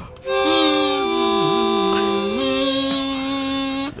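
Harmonica played in long held notes, two reeds sounding together close in pitch. The lower note wavers and bends down and back up in the middle, and the upper note drops out a little before the end.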